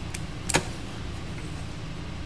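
Two short clicks from someone working a computer, a faint one right at the start and a louder one about half a second in, over a steady low hum.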